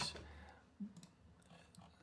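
A few faint, isolated clicks from someone working a computer, spread over a near-quiet stretch just after a spoken word ends.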